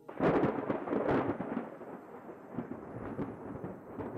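Thunder: a sudden crack that rolls on as a rumble, loudest in the first second or so and fading over the next few seconds.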